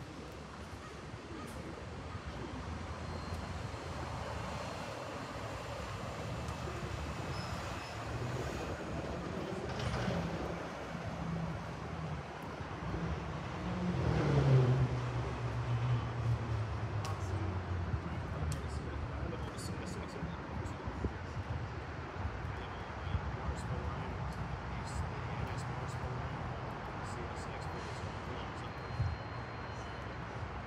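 Steady low hum of an Amtrak Pacific Surfliner train idling at the platform, its diesel engine running. About halfway through, the sound swells louder and its pitch falls.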